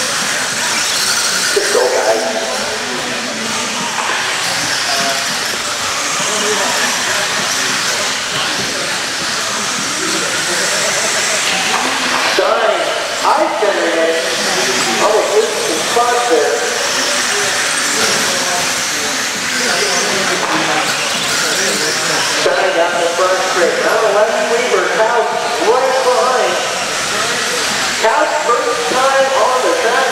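Two-wheel-drive electric RC buggies with 17.5-turn brushless motors racing on an indoor dirt track: a steady high hiss and whine of motors and tyres. A voice talks over it in the middle and near the end.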